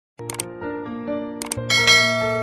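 Mouse-click sound effects, two quick double clicks about a second apart, over sustained notes of instrumental music. Near the end a bright, ringing chime sounds, the loudest moment.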